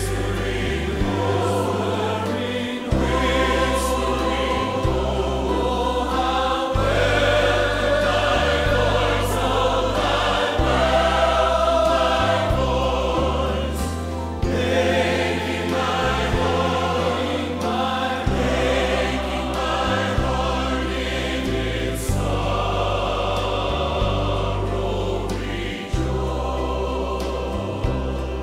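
Live gospel hymn music between verses: piano with sustained bass notes that change about once a second, under a full, choir-like sustained sound.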